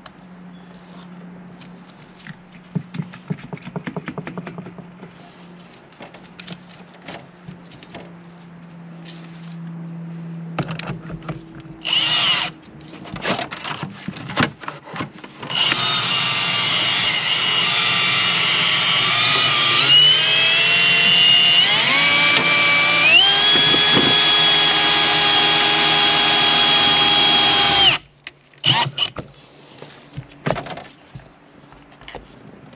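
Milwaukee cordless drill driving a windshield wire-out winder, pulling the cutting wire through the windshield's urethane. After a brief burst about twelve seconds in, it runs steadily for about twelve seconds, its pitch stepping up twice, then stops suddenly. Scattered light handling clicks and knocks come before it.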